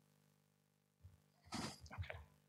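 Near silence: faint steady room hum, with a man briefly saying "okay" near the end.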